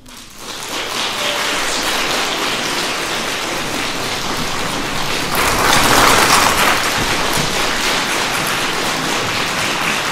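Audience applause that breaks out about half a second in, builds quickly, and is loudest around six seconds in.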